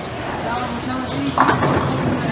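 Bowling alley din: a rumble of rolling balls and clattering pins under voices, with a sharp loud peak about one and a half seconds in.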